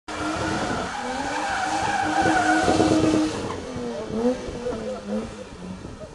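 BMW E30 sliding in a drift, its engine at high revs with the tyres squealing and hissing on the tarmac. About three seconds in the tyre noise eases and the engine revs rise and fall several times.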